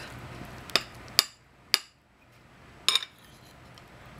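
A metal spoon clinking against a dish as food is scooped up: four sharp clinks about half a second apart, the last one doubled.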